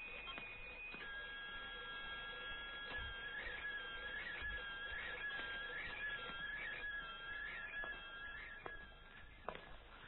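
Electronic control panel sound effect: steady high electronic tones that change pitch about a second in, with a warbling chirp repeating about twice a second and a few faint clicks. The tones stop shortly before the end.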